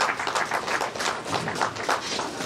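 Audience clapping: a dense, uneven run of hand claps.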